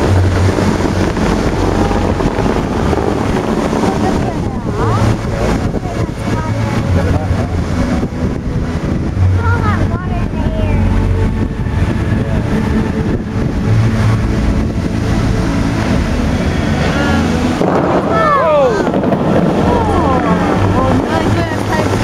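Loud, steady rush of water from the Fountains of Bellagio's jets spraying up and falling back into the lake, with wind buffeting the microphone. Onlookers' voices chatter over it.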